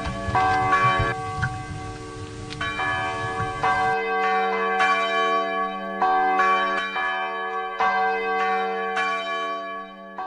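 Bells ringing, struck roughly once a second, each stroke ringing on in long overlapping tones. For the first few seconds a music track plays underneath, then stops, and the bells ring alone.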